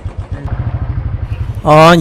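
Motorcycle engine running with a steady, even beat. A man's voice starts near the end.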